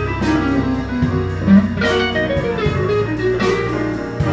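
A jazz combo playing an instrumental passage. A hollow-body electric guitar carries a melodic line over electric bass, keys and drums with a steady cymbal pulse.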